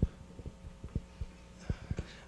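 Irregular soft thumps and knocks of a live microphone being handled, a few a second, over a steady low hum from the sound system.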